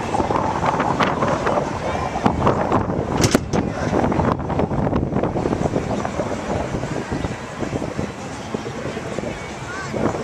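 Strong gusty wind buffeting the microphone, with indistinct voices under it and a few sharp knocks about one and three seconds in.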